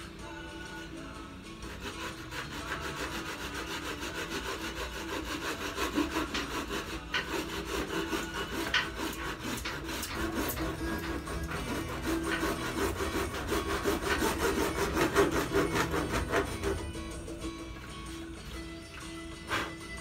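Coarse-toothed wood handsaw cutting through the plastic mounting lugs of a motorcycle airbox, in quick even back-and-forth strokes. The sawing starts about two seconds in and stops a few seconds before the end.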